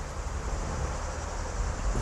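Steady low rumble of background noise with a faint hiss above it, in a short gap between spoken phrases.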